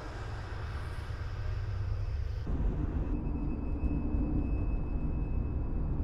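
Car driving at night as a sound effect: a steady low rumble of engine and road noise. About halfway through it turns duller and more muffled, like the drone heard inside the car's cabin.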